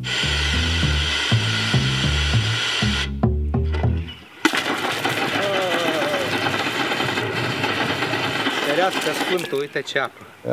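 Water gushing from a blue street hand pump into a plastic bottle, a steady splashing pour that pauses briefly around three to four seconds in and then runs strongly to the end. A plucked bass line plays under the first four seconds, and a man's exclamation begins near the end.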